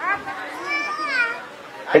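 A child's high voice calling out briefly, rising and then falling in pitch.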